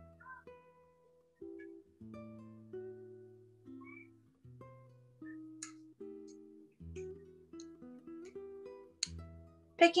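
Soft background music: a slow melody of plucked, guitar-like notes that each fade away, over low held bass notes.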